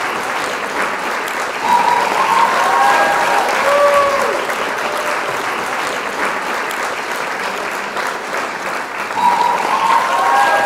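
Added audience-applause track: a crowd clapping steadily, with a few brief whoops and cheers rising over it about two seconds in and again near the end.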